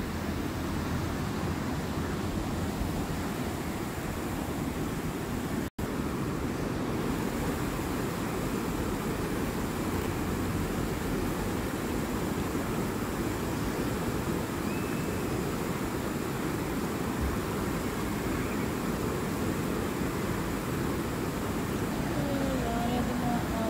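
Steady rushing of a fast-flowing river, an even roar with a momentary break about six seconds in.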